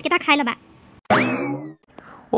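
A cartoon 'boing' sound effect about a second in: a springy tone sweeping quickly upward in pitch, lasting under a second.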